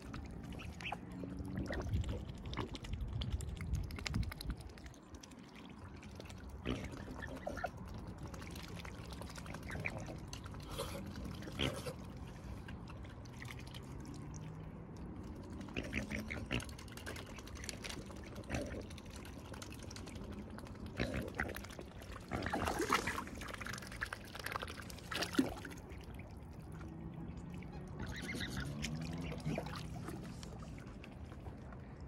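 Swans and cygnets dabbling for seeds in shallow water, their bills sifting and slurping with small irregular splashes and drips. A run of louder splashing comes about three quarters of the way through.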